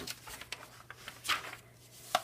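Glossy magazine pages being turned by hand: a soft, faint paper rustle about halfway through.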